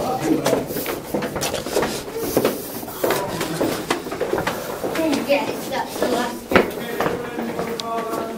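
Indistinct talk of people's voices, with frequent short clicks and knocks throughout.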